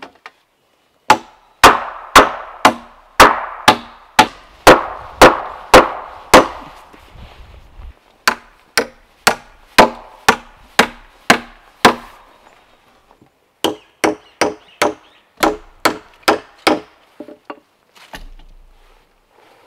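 Hammer blows on a log post of a timber frame, in three runs of steady strikes about two a second, each with a short ring.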